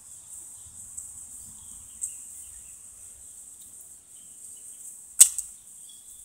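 A steady high insect buzz, with a sharp crack about five seconds in, followed by a smaller one.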